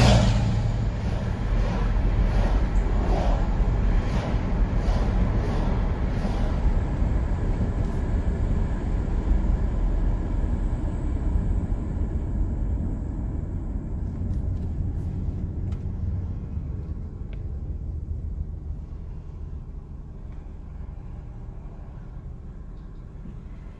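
Road and engine noise of a car heard from inside the cabin: a steady low rumble with tyre and wind hiss that gradually dies away as the car slows toward a stop.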